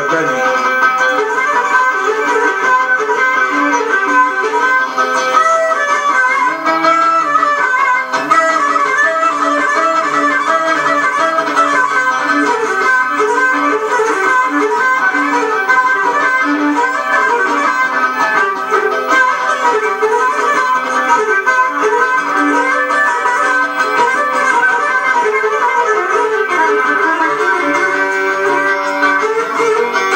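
Cretan lyra and laouto playing an apladiana dance tune live, a continuous bowed melody over plucked rhythm without a break.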